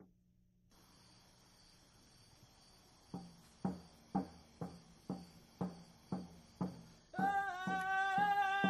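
Music: a drum beating steadily about twice a second, starting about three seconds in, joined near the end by a held, pitched melody line.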